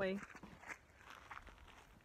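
Faint footsteps on a dirt trail: a few soft, scattered crunches underfoot, following a woman's last spoken word.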